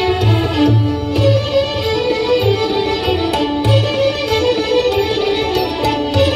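Ensemble of violins playing a sustained melody, accompanied by tabla with repeated deep strokes on the bass drum.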